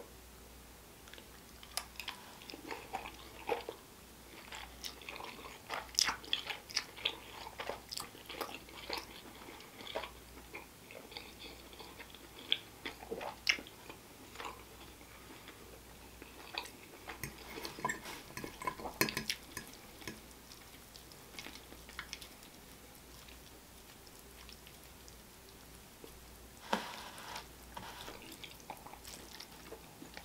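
Close-miked chewing of a mouthful of spaghetti with shredded pork and tomato sauce: irregular soft mouth smacks and clicks, busiest through the first two-thirds and then mostly quiet.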